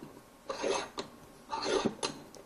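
Steel bench vise handle turning the jaw screw: two short rasping turns with a sharp click about a second in.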